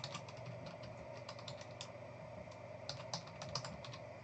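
Computer keyboard typing: faint runs of quick, light key clicks, pausing briefly about halfway through.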